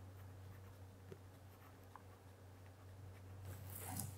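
Faint scratching of a pen writing a word on paper, over a steady low hum.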